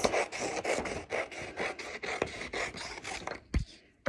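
Scissors cutting a sheet of paper into strips: a quick run of crisp snipping strokes, about four to five a second. A single sharp knock comes near the end.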